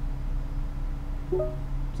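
Steady low hum inside a stationary car's cabin, with one short pitched blip about a second and a half in.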